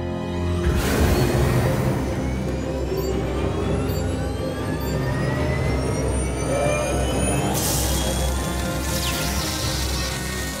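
Sci-fi 614-AvA speeder bike engine spooling up on a test stand, about a second in, with a whine that climbs in pitch throughout as it is pushed to full speed and starts to overheat. Tense dramatic music plays under it.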